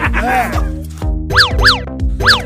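Background music with a steady bass line, with two quick cartoon-style sound effects about a second and a half in, each sweeping sharply up in pitch and straight back down.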